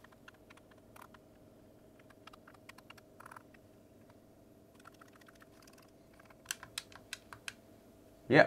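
Faint, irregular plastic clicks from the buttons and thumbsticks of an Xbox One controller being pressed and moved while it is tested, with a quicker, louder run of clicks near the end.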